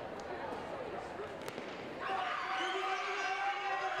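Stadium crowd hush broken by a single sharp crack of the starter's gun about a second and a half in, signalling the start of the sprint; from about two seconds in the crowd's shouting and cheering swells.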